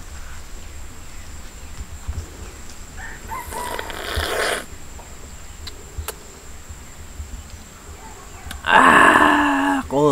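A rooster crowing twice: a fainter crow about three seconds in, and a loud one of just over a second near the end.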